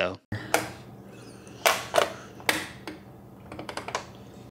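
AIO liquid cooler's pump head being twisted and worked loose from the CPU: irregular creaks and sharp clicks, ending in a quick run of small clicks, a creaking, croaking sound like an audio clip from The Grudge.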